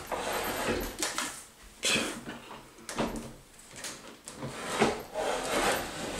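A mirrored closet door being forced shut: it scrapes and rubs in about six separate pushes because it sticks and is really hard to close.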